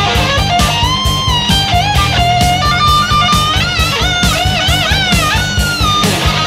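Heavy metal song: a distorted electric guitar lead plays held notes that bend up and down with vibrato, over driving bass guitar and drums.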